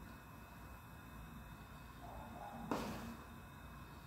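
Quiet room tone, with one faint short click about two and three-quarter seconds in.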